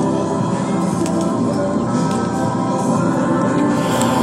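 Music playing through a Marantz 2250B stereo receiver, steady and mid-level, its sound shaped by the bass and mid tone controls being turned.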